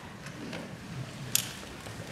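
A quiet lull of room tone with faint low murmurs, broken by one brief sharp click a little past halfway.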